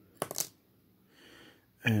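A small plastic toy rifle from a 1:18 scale action figure falling onto a table, landing in a quick cluster of sharp clicks about a quarter second in.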